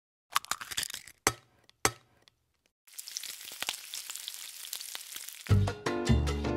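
A handful of sharp cracks, two of them loud, in the first two seconds; after a short gap, a steady crackling hiss. Latin-style background music with a bass line starts near the end.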